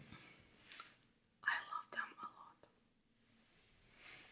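A woman whispering briefly, a few quiet words for about a second midway. Faint soft rustles come before it.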